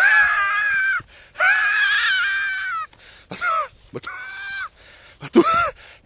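A man's wordless, high-pitched falsetto cries: two long held ones in the first three seconds, then a few shorter ones. They are exaggerated exclamations of outraged disbelief, voiced for a character in a story.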